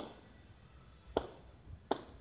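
Hard jai alai pelota cracking against the fronton's wall and floor during a rally: three sharp hits, one at the start, one a little over a second in and one just before the end, each followed by a short echo.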